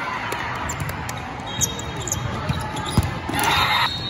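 Volleyballs being struck and bouncing in a large hall, heard as several sharp thuds. A louder burst of noise comes near the end.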